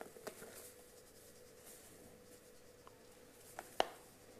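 Faint, soft scratchy rustling of flour being sifted through a mesh sieve into a glass bowl, with a few light ticks and one sharp click near the end.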